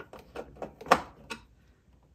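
A few light clicks and knocks of a screwdriver and hands on the plastic base plate of a Riccar 8900 upright vacuum as its screws are tightened down, the loudest click about a second in.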